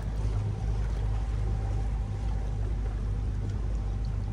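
Small excursion boat's motor running steadily under way, a constant low drone with a faint steady higher tone above it.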